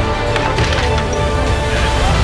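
Cracking and crunching of a wrecked car's door and body being forced apart during a vehicle extrication, several sharp snaps, with background music underneath.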